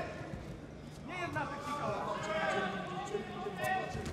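Voices calling out in the arena, quiet for the first second and then sustained, with a few short thuds of kicks landing and feet striking the mat.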